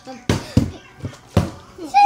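Plastic drink bottle flipped and coming down on a hard surface: three sharp knocks as it hits and bounces, the last about a second after the first two.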